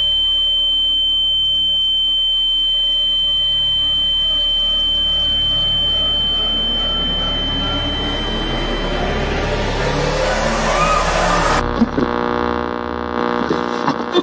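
Film soundtrack effects: a steady high-pitched ringing tone held over a low drone. From about six seconds in, a swell rises in pitch and builds, then cuts off abruptly near twelve seconds, giving way to quiet held music chords.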